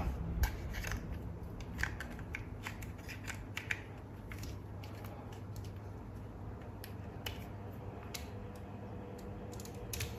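Light, scattered clicks and taps of small plastic and metal parts being handled: the plastic housing of a Braun Series 5 shaver being closed up, and screwdriver bits being picked up and swapped. The clicks come thickest in the first few seconds and thin out after.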